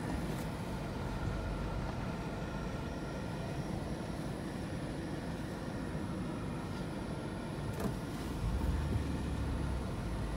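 Cabin noise of a vehicle driving slowly on a dirt road: a steady low rumble of engine and tyres, heard from inside, growing heavier for a moment a little before the end.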